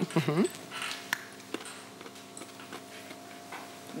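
A few faint short clicks and crunches of roasted almonds being picked from a small glass bowl and bitten, over a steady low electrical hum.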